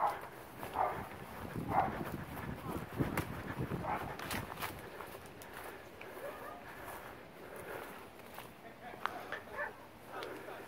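A dog barking, several short separate barks spaced out, most of them in the first half, with footsteps underneath.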